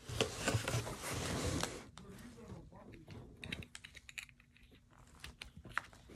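Paper packing and packaging rustling and crinkling as hands dig through a cardboard box, loudest in the first second and a half, followed by a run of small crackles and clicks as a small packet is handled and peeled open.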